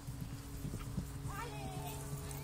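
Dull hoofbeats of a pony cantering on grass.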